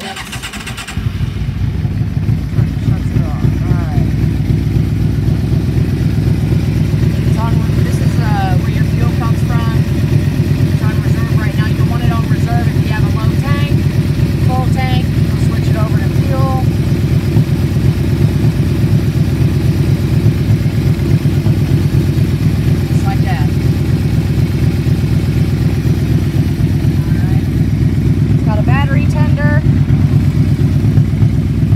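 1999 Yamaha Royal Star Venture's 1294 cc V4 engine, with aftermarket L.A. Choppers exhaust, starting about a second in and then idling steadily with an even, rapid exhaust pulse.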